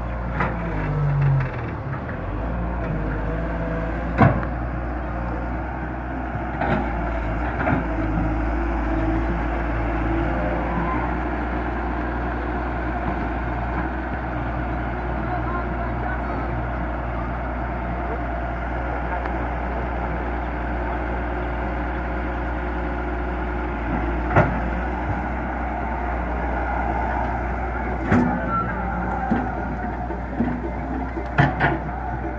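Diesel engine of a Hyundai Robex 130-W wheeled excavator running steadily while it works, with a few short sharp knocks over the engine sound.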